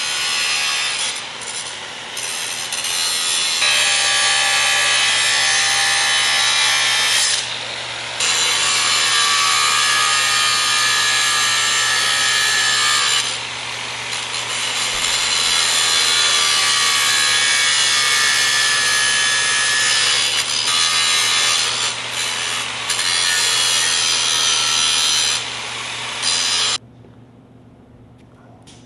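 Electric angle grinder with a cut-off disc cutting through the steel wire of shopping carts: a loud, steady whine over harsh grinding noise. It eases off briefly several times and cuts off suddenly about a second before the end.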